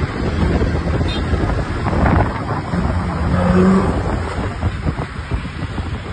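Road traffic heard through heavy wind buffeting on the microphone, with a low engine rumble throughout. A steady low hum stands out for about a second midway.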